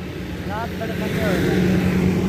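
A motor vehicle engine running steadily, growing louder from about a second in, with faint voices in the background.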